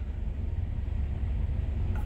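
Low, steady rumble of an idling diesel engine heard inside a parked semi-truck's sleeper cab.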